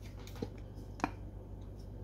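Two light clicks about half a second apart as a bamboo lid is set onto a glass cookie jar, the second one sharper.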